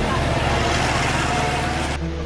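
Street noise with a vehicle going by and people's voices in the background, over steady background music.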